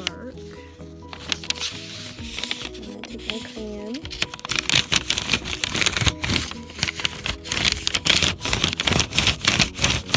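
Wax crayon rubbed hard over paper held against tree bark: a rapid, irregular run of scraping strokes that starts about four seconds in and becomes the loudest sound, over background music.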